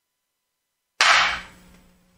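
A single sharp crack about a second in, breaking off dead silence and fading within half a second.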